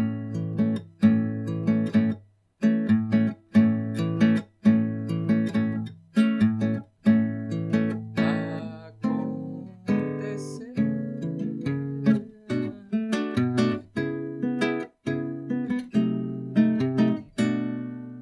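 Seven-string nylon-string acoustic guitar (violão de sete cordas), played with a thumbpick, in a samba accompaniment rhythm (levada): bass notes under short plucked chords in a repeating pattern. There are a few brief breaks between phrases.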